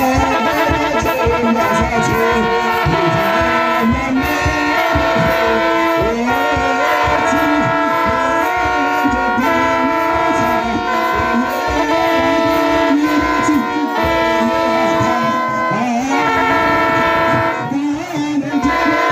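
A choir of men chanting an Ethiopian Orthodox hymn in unison, in held notes that step from pitch to pitch, over steady beats of a kebero drum.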